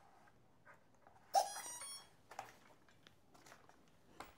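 A short electronic startup tone, about half a second long, from an RC plane's electronics about a second after its flight battery is plugged in, signalling power-up before the self check. A few light clicks of handling follow.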